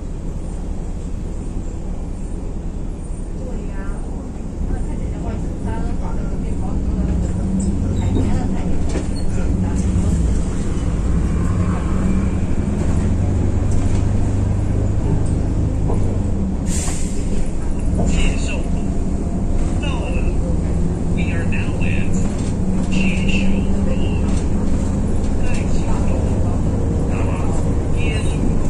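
City bus engine and drivetrain heard from inside the cabin: a steady low drone that grows louder about six seconds in as the bus pulls away from the intersection and runs on down the street, with short chirps and rattles over it.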